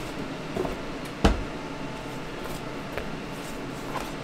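Cardboard graphics-card packaging and its foam insert being handled, with one sharp knock about a second in and a couple of lighter taps.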